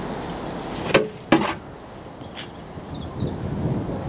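Garden fork digging into and lifting rotting horse manure from a heap into a wheelbarrow: two sharp knocks about a second in and a fainter one midway, over a steady background of wind.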